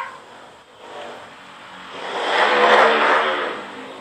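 A motor vehicle passing, its engine noise swelling to a peak about three seconds in and then fading.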